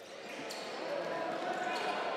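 Live sound of an indoor handball game: a handball bouncing twice on the sports-hall floor, with players' voices in the background of the echoing hall.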